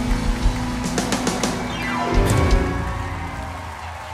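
Live country band playing the final bars of a song: sharp drum and cymbal hits about a second in, a quick sweep down in pitch, then the last chord ringing out and fading.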